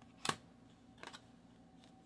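Tarot card handled on a wooden table: one sharp snap about a quarter second in, then a softer double tap about a second in.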